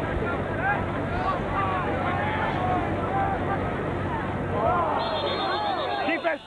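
Many spectators' voices talking and calling out over one another in a steady din. A louder voice close by rises out of it near the end.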